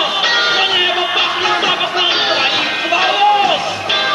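Rock band playing live on stage, with a voice over the full band.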